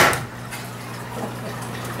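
A cordless drill driving a screw into a wooden board stops just after the start. Then a steady low hum continues under faint background noise.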